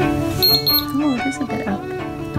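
Background string music, with two short high beeps from a digital thermometer in quick succession about half a second in, the signal that the temperature reading is done.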